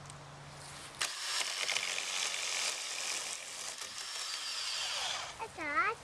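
Ryobi 40-volt cordless electric chainsaw running and cutting into a dead log. It starts suddenly about a second in and stops after about four seconds.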